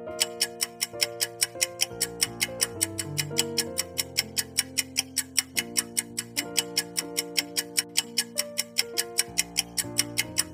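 Countdown timer sound effect ticking steadily at about four ticks a second over soft background music with held notes.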